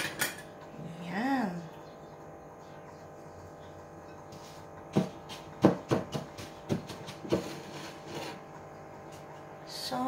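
A quick run of about half a dozen sharp clicks and knocks about halfway through, with one more a little later and a single click at the very start: a metal spoon, an opened tin can and a plate being handled on a stone countertop.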